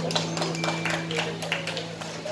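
Scattered hand claps from a small audience as the band's last held chord fades out and stops near the end.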